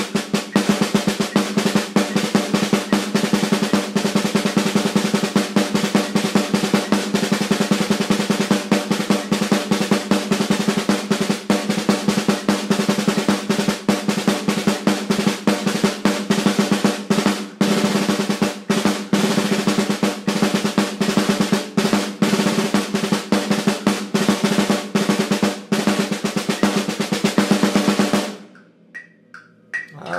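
Snare drum playing a rudimental solo: a dense, fast run of strokes over the drum's steady ring. It stops suddenly near the end, and the ring dies away briefly.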